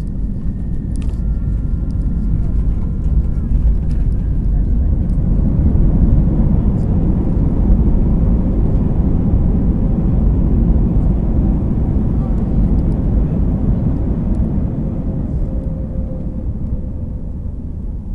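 Cabin noise of an Airbus A320-family jet on its landing roll: a deep, steady rumble of engines and runway. It builds to its loudest several seconds in, then eases off as the aircraft slows.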